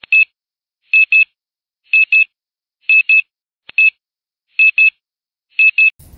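Electronic double beeps, high-pitched, repeating about once a second for seven pairs with dead silence between: a loading-screen transition sound effect.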